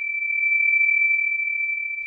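A steady, high-pitched pure tone, a ringing sound effect imitating the ringing in the ears of tinnitus.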